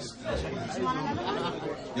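Audience chatter: many voices talking at once at a low level in a large room, with no one voice standing out.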